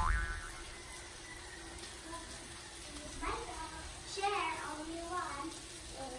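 Faint voices in the background, rising and falling in pitch in a few short phrases, over quiet kitchen room tone.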